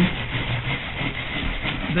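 Natural-bristle buffing brush scrubbing whiting over a leaded stained-glass panel in circular strokes: a steady scrubbing hiss. The brush is burnishing the lead came and cleaning the glass at the end of cementing.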